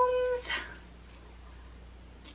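A drawn-out, high-pitched voice held on one note ends about half a second in, followed by a short breathy sound. After that there is only faint room tone.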